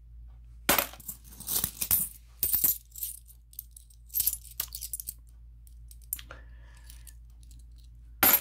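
Korean 500-won cupronickel coins clinking together in the hands as they are sorted: clusters of quick jingling clicks over the first three seconds, then scattered single clicks, and about six seconds in a single coin rings briefly.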